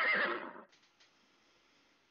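A horse whinnying, its wavering call fading out about half a second in. Near silence follows.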